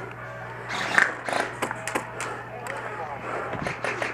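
Scattered sharp pops of airsoft gunfire, about a dozen at irregular spacing, with shouting voices in the background.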